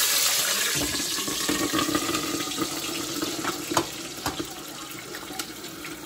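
Scallions, garlic and hot peppers dropped into hot frying oil: a loud sizzle that starts suddenly and slowly dies down, with scattered pops from the moisture in the herbs hitting the oil.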